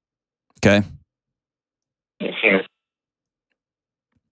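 Speech only: a man says "okay" in a close studio microphone. About two seconds in comes a brief voiced sound from a second person, heard through a telephone line.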